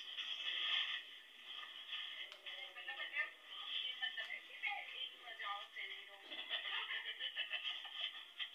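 Speech over music with a thin, narrow sound, like a video playing on a phone's speaker.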